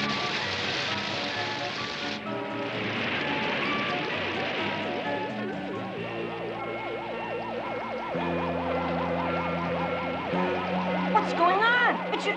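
Cartoon sound effects over background music with held notes: a rush of gushing water that dies away within a few seconds, then a fast-wobbling electronic warble as the axle pin glows.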